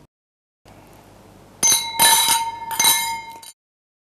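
About five quick, bright clinks ring out together over roughly two seconds, starting about a second and a half in, then cut off abruptly. A faint hiss comes before them.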